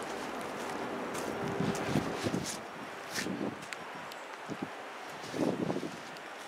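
Outdoor ambience of wind on the microphone, with a steady background hiss and a scatter of short scuffs and clicks. A few louder scuffs come near the end.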